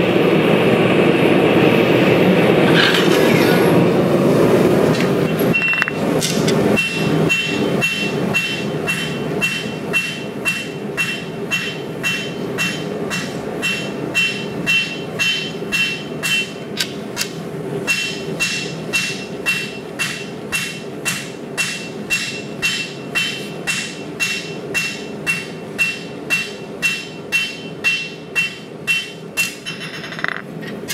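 A gas forge burner roars steadily for about the first five seconds. Then a rounding hammer strikes red-hot 80CrV2 blade steel on an anvil, about two blows a second, each blow with a short high ring from the anvil.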